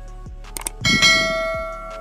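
Subscribe-button animation sound effect: two quick clicks about half a second in, then a bell chime that rings out and fades over about a second.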